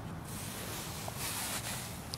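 Steady background noise: a low rumble with a faint hiss and no distinct event.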